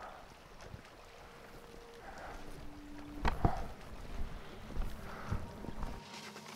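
Lake water lapping against shoreline rocks, with light wind; a single soft knock about three seconds in.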